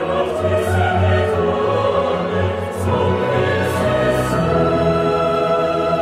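Choir singing with orchestra in a late-Romantic Norwegian oratorio, sustained choral lines over orchestral accompaniment.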